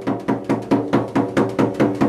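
Hand drum struck by hand in a steady, quick beat of about six strikes a second, each stroke with a short ringing tone.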